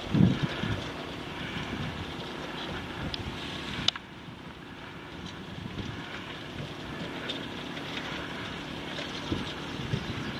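Wind buffeting the microphone, a steady rushing with a stronger gust right at the start, and one sharp click about four seconds in.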